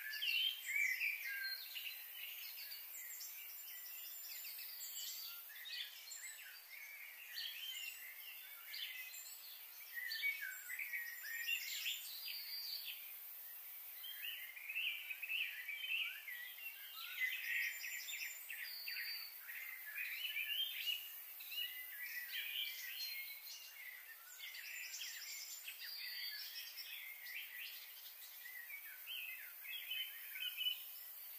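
Birds chirping and calling in quick clusters of short notes, again and again, over a steady faint high hiss.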